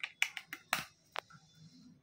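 A quick series of sharp plastic clicks and taps as AA batteries are pressed into the battery compartment of a handheld hardness tester, ending a little over a second in.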